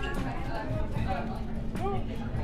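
Indistinct voices and crowd chatter in a busy shop, with a brief vocal sound near the end.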